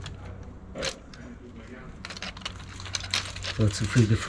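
Small plastic clicks and rattles of a scale-model seed drill being handled and fitted to an RC tractor's rear hitch, a lone click about a second in and a run of them near the end, over a steady low hum.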